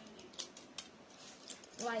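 A few short, sharp clicks and crackles as a balut eggshell is picked and peeled by hand, with a brief voice sound at the end.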